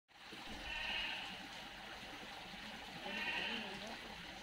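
An animal calling twice, about half a second in and again near the end, each call about half a second long, over a steady background hiss.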